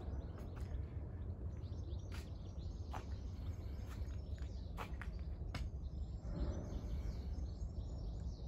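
Outdoor ambience: a steady low rumble of wind on the microphone, with faint bird chirps and a few sharp clicks scattered through.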